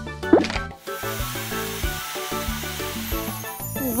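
Bouncy children's cartoon music with a magic-wand transformation effect: a quick rising whoosh about a third of a second in, then a hissing sparkle shimmer that fades out near the end.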